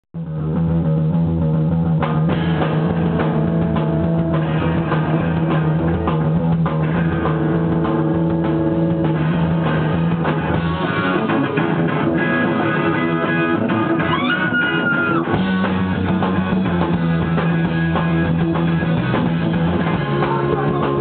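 Rock band playing live: electric guitar, bass guitar and drum kit, loud and driving, starting at once at the very beginning.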